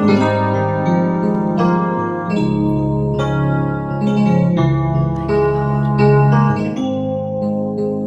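Keyboard playing a slow run of held chords, a new chord struck about every second, heard over a video-call line.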